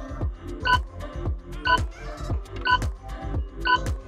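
Electronic countdown beeps, one short beep each second, ticking off the answer timer over background music with a steady beat.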